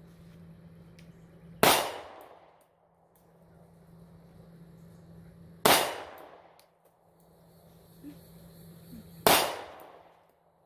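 Springfield Hellcat 9mm pistol fired three times in slow, aimed fire, about four seconds and then three and a half seconds apart. Each shot is a sharp crack with a short ringing tail.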